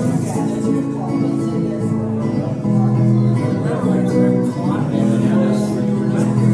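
Guitar strummed live, chords ringing and changing about once a second in a country-style song.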